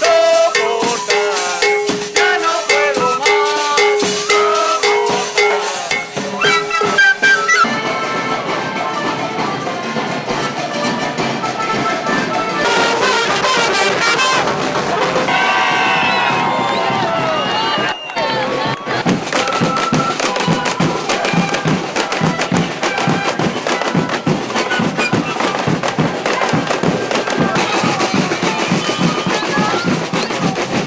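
Parade band music with drums and brass, mixed with crowd voices and shouting. The sound changes abruptly a few times, and a steady drumbeat dominates the second half.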